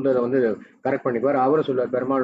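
A man speaking, heard over a video call, with a brief pause a little after half a second in.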